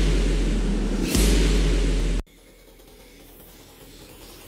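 Dark cinematic sound-effect layer from a metal track's SFX bus playing back: a deep steady hum under a noisy hiss, with a brighter swell coming in about a second in. It is cut off abruptly a little after two seconds.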